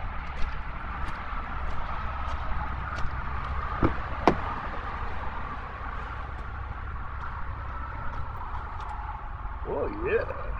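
Steady rumble of passing road traffic, with two sharp clicks about four seconds in as the RV's truck-cab door is unlatched and swung open.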